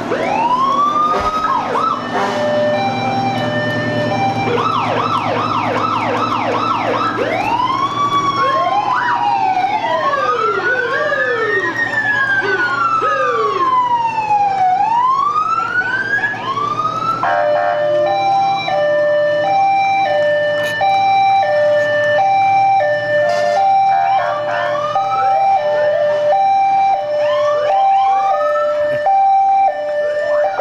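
Several emergency-vehicle sirens sound at once from fire and ambulance vehicles, over the low running of their engines. There are long rising and falling wails and runs of fast yelps, and from about halfway a two-tone hi-lo siren swaps steadily between two notes.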